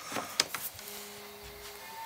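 A few light clicks, then a faint, steady electrical hum lasting about a second, as a jumper is hooked to the snowmobile's low battery.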